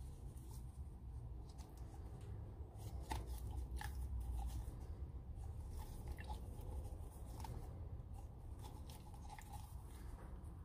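A small foam air filter being squeezed and worked by gloved fingers in a thin plastic cup of kerosene. It makes faint, irregular wet squelches and small clicks, with the cup crinkling in the hand.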